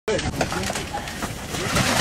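People's voices talking over steady background noise, with a few short knocks.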